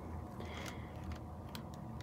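Quiet room tone: a steady low hum with a few faint, scattered ticks.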